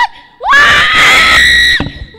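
A young woman screaming into a handheld microphone: one loud, high scream about half a second in that rises at the start, holds for about a second and a half and cuts off sharply.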